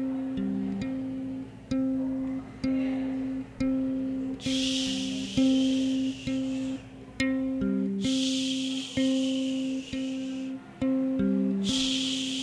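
Live experimental-rock music: an electric bass guitar plucks a slow repeating figure of held notes, about one a second, with an occasional lower note. A hissing wash of noise swells in three times, from about four seconds in.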